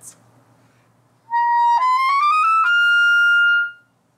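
Clarinet playing in its high register: about a second in, a held note, then a quick rising run of several notes up to a long held top note that fades away near the end.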